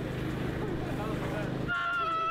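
A man's voice delivering the line "put a bounce with it" over a steady low hum, then a long, loud, drawn-out shout of "ahhh" starting near the end.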